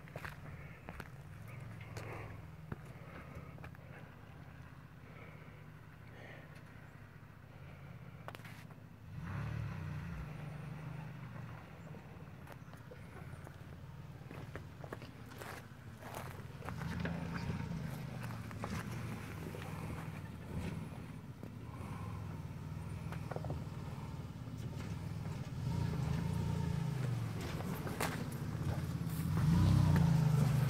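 Lifted Toyota Tacoma pickup crawling down a granite slab in four-wheel-drive low range. The low engine rumble rises and falls with the throttle and grows louder as the truck comes closer, with scattered clicks and crunches of tyres on rock.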